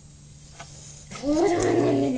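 A person's mock animal roar, one long voiced call about a second in that rises and then falls in pitch.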